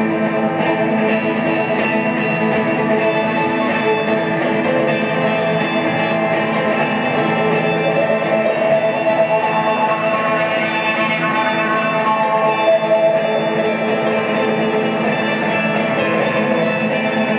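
A live instrumental passage from two electric guitars and a violin, with no vocals: guitars strummed in a steady rhythm under long, held violin notes.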